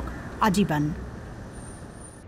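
A voice speaks a last word, then faint street traffic ambience carries on steadily, with a thin high whine near the end.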